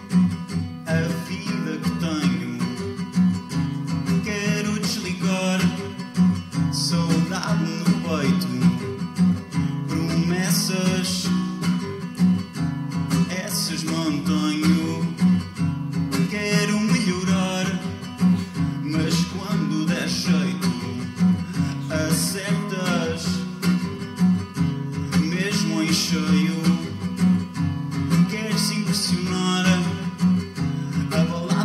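Live music led by a strummed acoustic guitar, with a steady, continuous low band sounding underneath.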